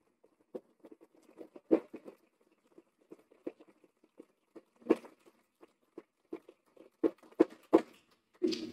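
Audience applause in a meeting room, heard as sparse, uneven claps rather than a full wash, with a few louder knocks about two seconds in, near five seconds and near the end.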